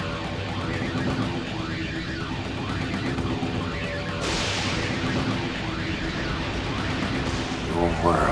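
Film soundtrack of sustained low synth tones. About four seconds in, a rushing hiss suddenly swells in over them.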